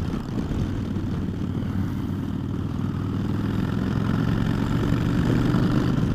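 A 2009 Harley-Davidson Dyna Fat Bob's Twin Cam V-twin, breathing through Vance & Hines Short Shots exhaust, running steadily at road speed as the bike is ridden. It grows gradually louder over the last few seconds.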